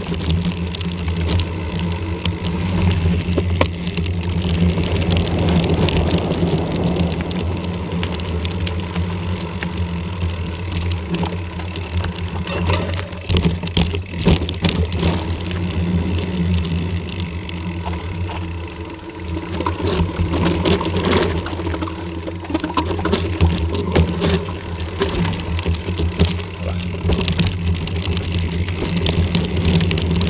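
Mountain bike riding downhill over rocky dirt and gravel: a steady rumble of tyres and wind with frequent rattles and knocks as the bike hits stones.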